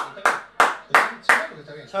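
One person clapping hands in a slow, steady rhythm, about three claps a second, five claps in all, followed by a shout right at the end.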